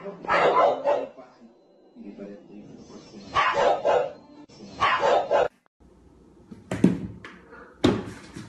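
A dog barking three times, with rough, loud barks spread over the first five seconds. Two sharp knocks follow near the end.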